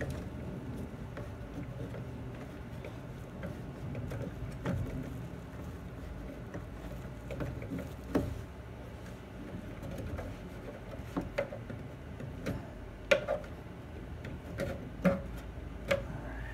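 Hands working an intake hose onto a plastic engine airbox: handling and rubbing noise with scattered clicks and knocks, the sharpest few in the second half.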